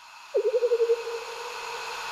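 Intro logo sound effect: a swelling whoosh of hiss, with a sharp wavering tone that comes in about a third of a second in, wobbles quickly, then settles into a steady note and fades.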